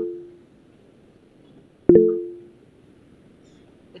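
Video-call app notification chime: a sharp, low, bell-like note that fades within half a second. One is dying away at the start and a second sounds about two seconds in.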